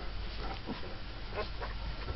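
Twelve-day-old mastiff puppy whimpering in about four short, squeaky cries.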